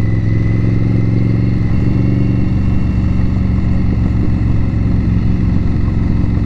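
The 2018 Indian Scout Bobber's V-twin engine, fitted with a Vance & Hines exhaust, running at a steady note while cruising, heard from the rider's seat.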